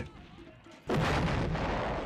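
A heavy artillery gun firing once: a sudden blast about a second in that runs on as a long, slowly fading noise.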